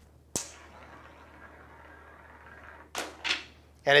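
A single sharp click as the magnetic rail fires, a ball snapping against the magnet stage, followed by about two and a half seconds of a ball rolling along the rail. Two short, sharper sounds come about three seconds in.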